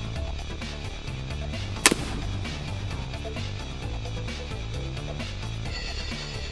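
Background music with a steady beat, broken about two seconds in by a single sharp crack.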